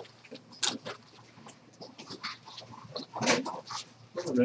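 Scattered rustling and clicking handling noises with faint, indistinct voices in the background, the loudest burst about three seconds in.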